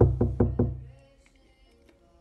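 Four quick, loud percussive knocks with a deep boom, about five a second, fading away within a second.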